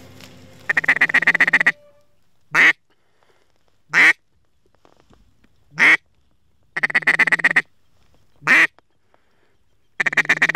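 Duck quacking: a fast run of quacks about a second in, then single quacks a second or two apart, with another short run a little past the middle.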